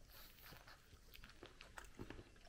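Near silence with faint, scattered soft clicks of people chewing mouthfuls of gooey doughnut.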